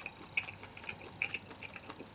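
A person chewing a mouthful of grilled pork offal skewer meat with the mouth closed: faint, irregular small wet clicks from the mouth.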